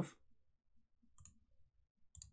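Near silence broken by one faint, short click about a second in: a computer mouse click.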